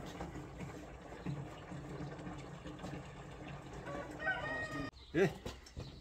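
A rooster crowing once, about four seconds in, over a faint low steady hum.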